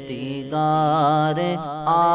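A naat (Urdu devotional song) sung with long held notes over a steady low vocal drone. The voice swells in about half a second in and steps up in pitch near the end.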